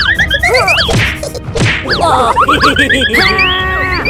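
Cartoon sound effects: wooden mallet whacks and swishes mixed with many quick, squeaky high-pitched sounds sliding up and down in pitch.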